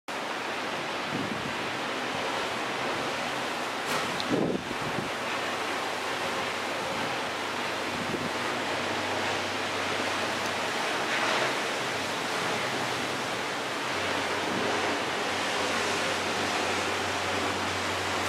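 Steady rush of wind over the microphone mixed with the wash of a choppy, whitecapped sea, with one brief louder rush about four seconds in.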